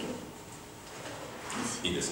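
A short pause between spoken phrases: quiet room tone, with a voice starting up softly near the end.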